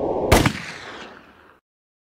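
A muffled rushing noise, then a single loud bang about a third of a second in that rings out for over a second before the sound cuts off abruptly.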